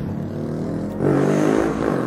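Street traffic: a passing motor vehicle whose engine note grows louder and rises in pitch about halfway through as it accelerates.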